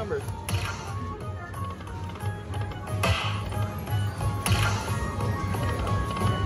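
Lightning Link Happy Lantern slot machine running its hold-and-spin bonus: electronic game music with a pulsing beat while the reels spin. Sharp hits sound about three seconds in and again about a second and a half later.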